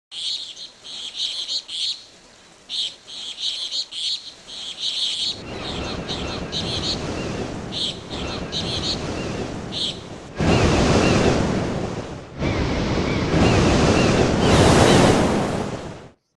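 Birds chirping in quick repeated calls, with the rush of ocean surf building beneath them. Two loud surges of breaking waves follow in the second half.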